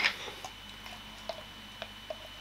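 A few faint, small clicks and taps as a container of coconut oil is handled, ready to be scooped, over quiet room tone.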